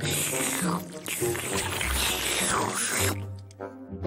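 Cartoon eating sound effect of a cat gobbling a bowl of noodles, with fast slurping and munching for about three seconds, over background music that carries on near the end.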